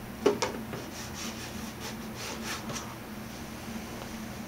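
A fingertip pressing and rubbing a masking-tape label onto a hollow plastic jug. There is one sharp tap just after the start, then a few light rubbing strokes.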